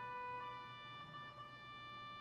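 Church organ playing held chords, the notes shifting to new pitches a few times.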